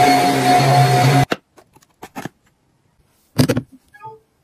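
Handheld bed vacuum running with a steady motor whine, cutting off abruptly about a second in. After that only a few faint clicks and one short loud knock near the end.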